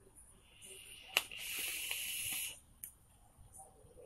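A man blowing out a long, breathy exhale through his lips, as after a drag on a cigarette. It starts with a faint click about a second in and lasts about a second and a half.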